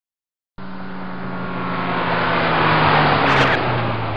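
Car engine sound effect, a car driving by: it comes in about half a second in, grows louder to a peak around three seconds, and its engine note slowly falls in pitch as it passes.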